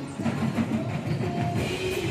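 Several acoustic drum kits with Sabian cymbals played together in a rock groove, stick hits on drums and cymbals over held musical notes that change pitch.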